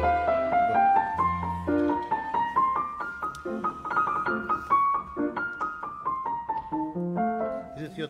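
Grand piano playing a flowing passage of quick notes, a melody moving over chords, with no break.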